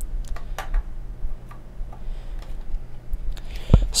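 Small scattered clicks and taps of an Intel Core i5-2500K processor being seated in an LGA 1155 socket and the socket's metal load plate and retention lever being closed, with a louder click near the end.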